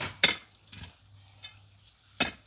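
Steel rock bar striking a large buried rock in a planting hole: two sharp, ringing clinks close together at the start, then two fainter knocks.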